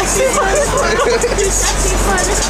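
Several voices chattering over the steady low hum of a motorboat running under way, with the rush of its wake and wind.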